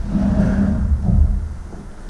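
Handling noise from a handheld microphone as it is picked up and passed along: a loud, low rumble lasting most of two seconds, part of a microphone problem.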